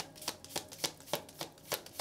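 A deck of tarot cards being shuffled by hand, a quick run of crisp card snaps about three to four a second.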